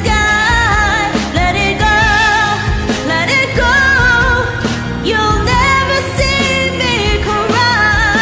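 Two women singing a pop ballad duet over an instrumental karaoke backing track, with held, gliding sung notes.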